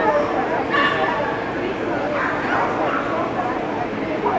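A dog barking, over people talking in a large hall.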